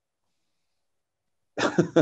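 Silence for about a second and a half, then a short non-speech burst from a man's voice near the end.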